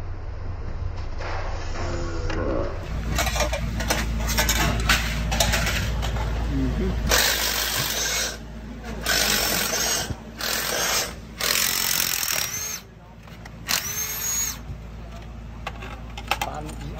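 Power tools run in short bursts of about a second each, with metal parts handled, as a crew strips down a top fuel dragster engine.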